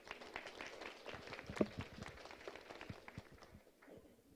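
Faint audience applause, thinning out about three seconds in.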